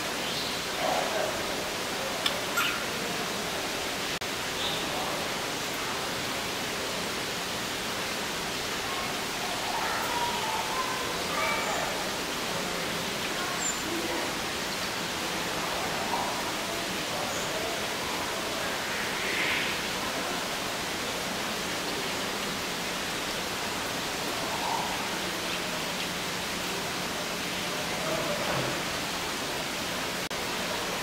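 Steady hiss of an indoor aviary's room ambience, with faint scattered chirps and distant murmurs. A couple of short clicks come about two seconds in.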